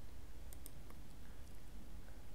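A computer mouse click, heard as a quick pair of faint ticks about half a second in, over a low steady background hum.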